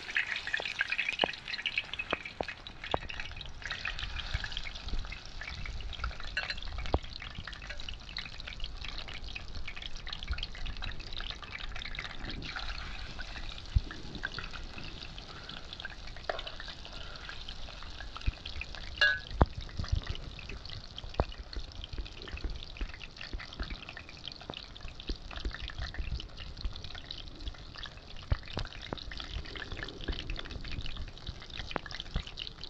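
Battered sea bass fillets frying in hot oil in a pan: a dense, steady sizzle with fine crackling, loudest in the first second just after the fish goes in.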